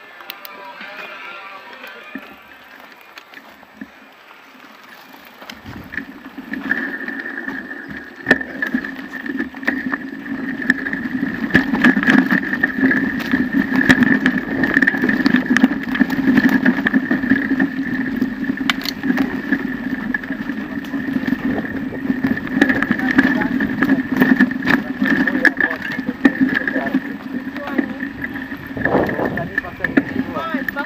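Bicycle ridden over a rough forest dirt trail, heard from a camera mounted on the bike. From about six seconds in there is a steady rattling hum of tyres and frame, with repeated knocks over bumps.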